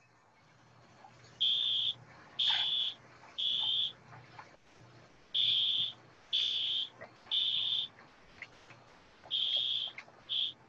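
A fire alarm beeping in the temporal-three pattern: three high half-second beeps, a pause, then three more, repeating. This is the standard evacuation signal.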